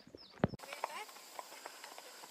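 Icelandic horses walking on a road, their hooves clip-clopping in faint, irregular knocks. In the first half-second a bird gives a few quick falling chirps.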